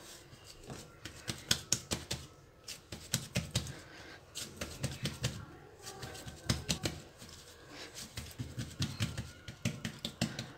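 Hands patting and pressing a ball of whole wheat bread dough into a loaf shape on a countertop: quick, irregular taps and pats in short bursts every second or so.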